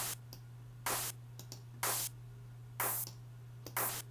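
Ultrabeat drum-synth clap with an added noise layer, played as a short bright burst about once a second, five times in all, while the noise layer's filter type is being switched. A steady low hum runs underneath.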